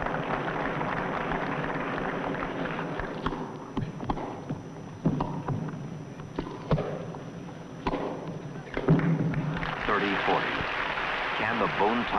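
A tennis rally: a ball struck back and forth by racquets, several sharp hits in the middle, over a steady crowd murmur in an indoor arena. Near the end the crowd noise swells as the point ends.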